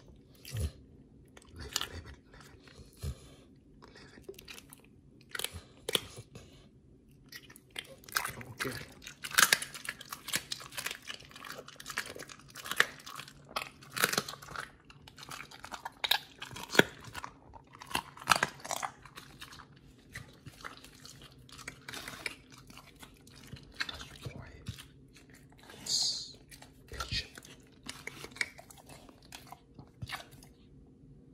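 Pit bull chewing and crunching raw chicken and beef offal taken from a hand, wet bites and cracking bone in irregular bursts, busiest in the middle stretch.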